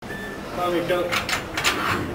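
Low voices in a gym, then a few short, sharp noises between about one and two seconds in.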